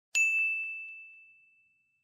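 A single bright ding, a bell-like chime sound effect struck once and fading out over about a second and a half.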